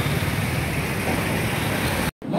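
Steady, dense rumbling noise with no speech in it.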